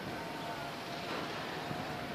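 Steady outdoor noise of a city's distant traffic, with a faint thin tone held through it.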